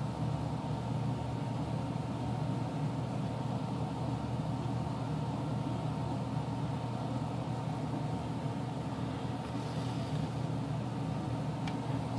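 Steady low background hum with a faint constant tone above it: room noise such as a fan or air conditioner running.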